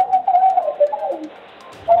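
A wavering, hum-like tone on the phone-in line, lasting about a second and sliding slightly down before fading.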